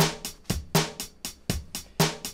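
Teenage Engineering OP-Z playing back a sequenced pattern of sampled drums: hi-hat on every eighth note with bass drum and snare hits, a steady beat of about four hits a second. The snare lands on the wrong step of the pattern.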